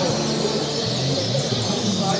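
Many caged songbirds singing at once in a songbird singing contest: a dense, overlapping chorus of short chirps and trills.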